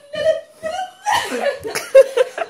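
People laughing in short repeated bursts, with a sharp louder outburst at the very end.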